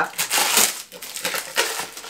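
Crinkling and rustling of the packaging of a set of non-stick grill mats as it is opened by hand, in irregular bursts, loudest about half a second in.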